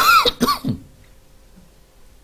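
A man clearing his throat close to a microphone: three short, throaty coughs in quick succession within the first second.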